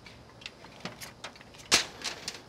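Crumpled aluminum foil crinkling in gloved hands, a handful of short crackles with the loudest near the end.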